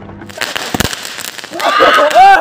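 Fireworks going off: a run of crackling bangs, getting much louder about one and a half seconds in, with shouting voices joining near the end.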